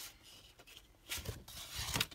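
Sheets of pearlized patterned paper sliding and rustling as they are turned over, in a few soft, short swishes.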